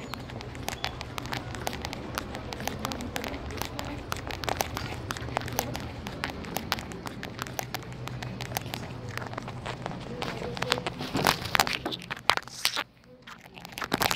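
Handling noise on a phone's microphone: dense crackling and rustling as the phone rubs against a hand or clothing, over a low steady hum.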